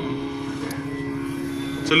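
A steady held musical drone of a few even tones, accompanying a chanted scripture recitation in a pause between verses; the chanting voice comes back in abruptly near the end.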